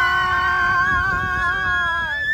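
A long, held scream from riders on a water-ride boat as it tips over the drop, its pitch steady and sagging slightly, over a low rush of water and wind.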